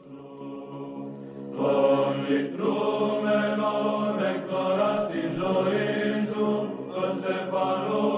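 Sacred choral chant in the Orthodox style: a soft held note at first, then the full voices come in about a second and a half in, singing long sustained notes that move slowly from pitch to pitch.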